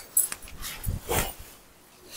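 Silk saree fabric rustling and swishing as it is lifted, shaken out and spread. There is a click near the start and two soft thumps about a second in as the cloth flaps.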